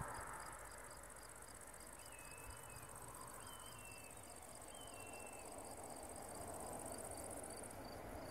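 Meadow insects chirping in the grass: a steady high buzz that stops near the end, over a regular chirp about three times a second. A bird gives three short falling whistles in the middle.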